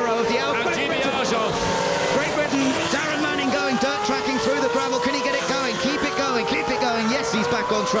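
A1GP single-seater's V8 racing engine running under power, its pitch climbing slowly and steadily over several seconds as the car accelerates.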